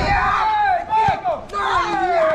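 Several children shouting and yelling together in high voices, overlapping, with a brief knock about a second in.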